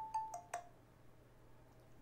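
A short two-note chime in the first half-second: a higher tone stepping down to a lower one, with a few light clicks. Then a faint steady hum.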